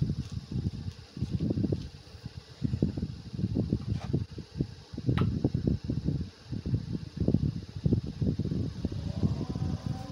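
Embroidered cloth being handled and moved about close to the microphone: irregular rustling and dull handling bumps, with a couple of light clicks about four and five seconds in.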